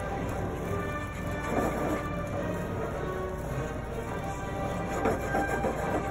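Beaten eggs sizzling in butter in a hot pan while being stirred with chopsticks as they set into curds, a steady frying hiss over a low rumble.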